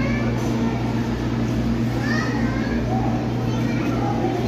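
Indistinct background chatter of visitors, including children's voices, over a steady low hum.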